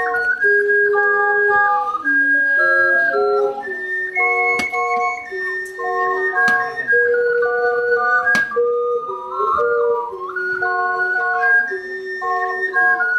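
An ensemble of ocarinas playing a tune in harmony, several clear, pure-toned parts moving together from note to note.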